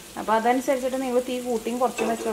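Chicken pieces frying in oil on a cast-iron tawa, a faint sizzle with the scrape of a spatula stirring them, under a woman talking.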